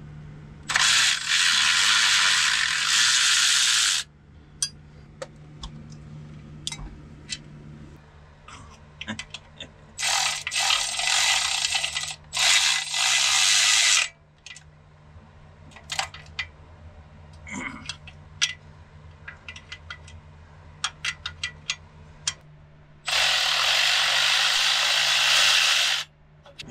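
Milwaukee cordless power tool running in four bursts of a few seconds each, backing out the bolts of a Jeep TJ's front shock and coil-spring retainer clip. Light metallic clicks and clinks of hand tools and parts come between the bursts.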